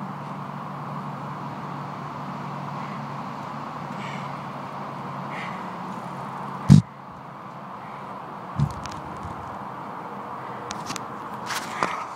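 Steady outdoor background noise with a low hum and two faint calls about four and five and a half seconds in. A single loud, sharp thump comes about two-thirds of the way through, and a softer thump follows two seconds later. Near the end there are light clicks and knocks as the camera is handled and moved.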